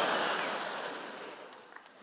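Studio audience laughing and applauding, dying away over about two seconds.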